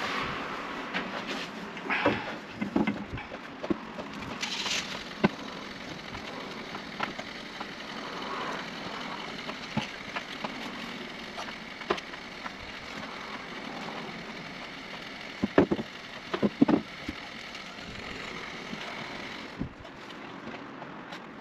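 Wooden knocks and clatter as softwood battens are handled and set into a timber frame, with tools being put down, irregular throughout; the loudest knocks come about two and five seconds in and in a close cluster at about fifteen to seventeen seconds.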